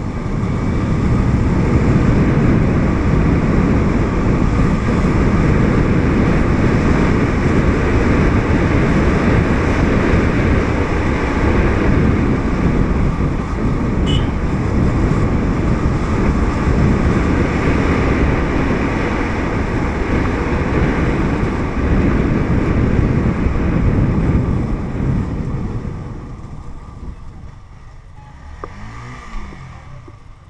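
Wind buffeting the microphone with a motorbike's engine running underneath while riding along a street. Near the end it dies down as the bike slows to a stop, with a brief engine note rising and falling.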